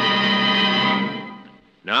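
Radio-drama music sting: a long held orchestral chord that fades away about a second in. A man's voice starts announcing at the very end.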